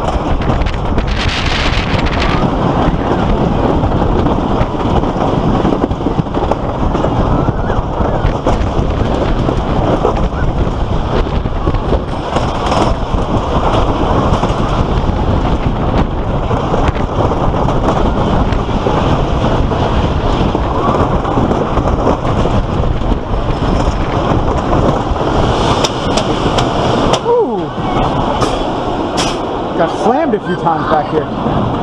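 Wooden roller coaster train running over its track: a continuous loud rumble and rattle with heavy wind rush on the microphone. Riders' voices come through. The rumble drops briefly near the end as the train slows into the station.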